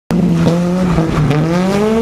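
Honda Civic Type-R rally car's four-cylinder engine held at high revs, its pitch climbing steadily through the second half.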